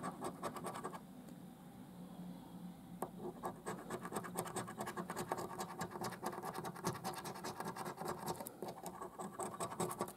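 A coin scraping the silver scratch-off coating from a scratchcard in rapid back-and-forth strokes, lighter for a couple of seconds about a second in, then dense and steady again.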